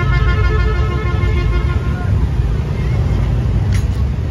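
A loud, steady low rumble of outdoor background din, with a run of short held musical notes in the first two seconds.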